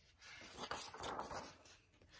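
A faint papery rustle of a picture book's page being turned by hand, lasting about a second and a half.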